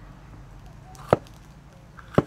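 A cleaver cutting through green bell pepper and striking the cutting board: a single sharp chop about a second in.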